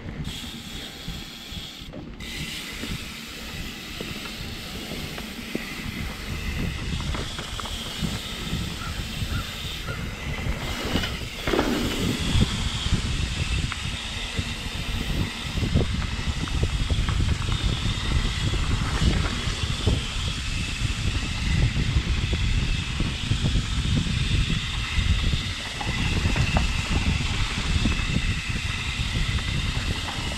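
Riding noise from a mountain bike on a dirt trail: wind rushing over the handlebar-mounted microphone and tyres rolling over dirt, with many small rattles and clicks from the bike. It gets louder from about halfway through as the bike picks up speed.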